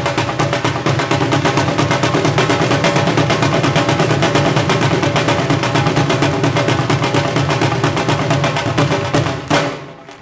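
Punjabi dhol drums played with sticks in a fast, dense stream of strokes. Shortly before the end, a loud stroke breaks off the run and the drumming thins to a few scattered hits.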